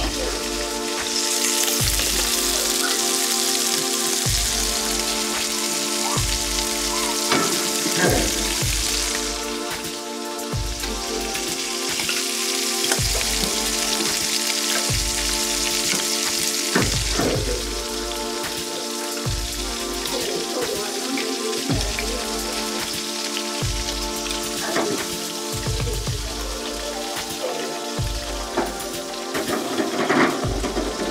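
Fish fillets and garlic sizzling in hot fat in frying pans on a gas stove, the hiss strongest for the first several seconds and then easing off. Background music with a slow, steady bass pulse plays throughout.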